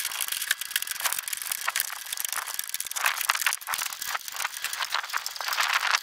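Small square black plastic plant pots rattling and clicking as they are pulled off a stack and set into plastic seed trays, in a rapid, continuous run of light clatter.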